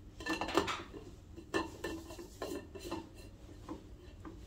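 Lid being fitted and twisted onto a black metal canister: a run of irregular clicks and clacks, the loudest in the first second, with smaller ones spread through the rest.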